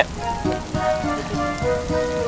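Heavy rain falling steadily, with soft background music of long held notes over it.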